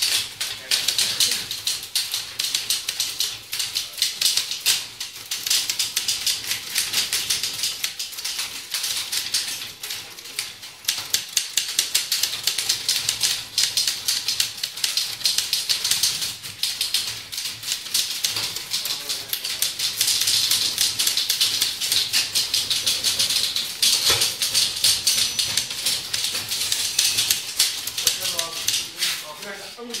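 Several manual typewriters being typed on at once, many fast overlapping key strikes making a continuous clatter.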